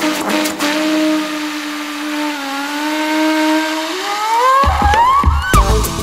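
Music: a flugelhorn holds long, slowly bending notes over sparse backing. About four seconds in, a rising sweep leads to drums and bass coming in just before the end.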